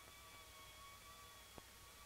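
Near silence: faint soundtrack hiss with a faint steady high tone, and a single sharp click about one and a half seconds in.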